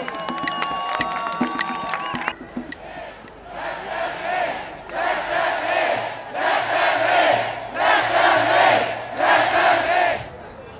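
Music with held notes and a low pulse, cut off after about two seconds. Then a large crowd chants a short phrase in unison, repeated about every one and a half seconds and getting louder toward the end.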